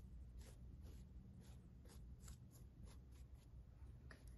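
Faint brush strokes: a small paintbrush dabbing and dragging a thick mix of Mod Podge glue and glitter over a canvas sneaker, soft scratchy strokes roughly twice a second over a low steady room hum.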